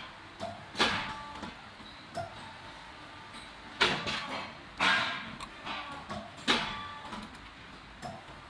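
Metal knocks and scrapes of a hand tool against a steel press plate and a rubber-coated dumbbell head being worked out of the mould: four louder clanks with a short metallic ring among smaller clinks.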